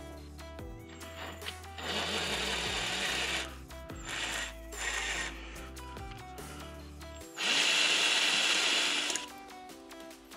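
A handheld power tool runs in four bursts, two long and two short, over background music.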